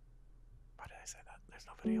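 A short pause in conversation, then soft whispered or breathy words from about a second in, and a voice speaking aloud again at the very end.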